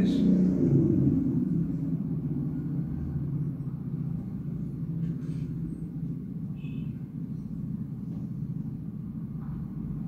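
Low, steady rumbling hum of background noise, easing off a little over the first few seconds.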